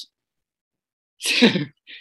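A man's short burst of laughter a little over a second in, after a stretch of complete silence, falling in pitch and trailing into a breathy exhale.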